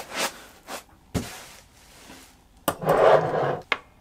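Handling noise of a pop filter being clamped onto a microphone stand and swung into place in front of the mic: a string of separate clicks and knocks, then a louder rubbing scrape about three seconds in.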